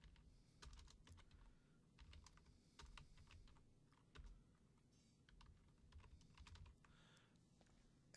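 Faint typing on a computer keyboard: quick runs of keystroke clicks separated by short pauses.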